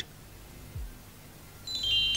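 A quiet stretch, then near the end a glockenspiel-like music cue begins: a cascade of bright, ringing chime notes stepping down in pitch.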